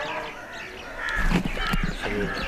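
Crows cawing with other birds calling, many short calls overlapping. About a second in, low bumps of the microphone being handled join them.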